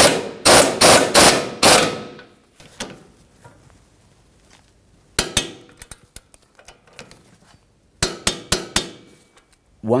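Impact wrench hammering in about five short bursts as it snugs the 21 mm lower shock mounting bolt. After a pause, sharp metallic clicks come as the bolt is torqued to 111 ft-lb with a torque wrench.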